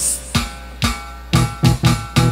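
Live huayno band with harp, electric bass and keyboard playing a break of short accented hits: six staccato strikes with the sustained playing dropped out between them, about half a second apart at first and quickening toward the end.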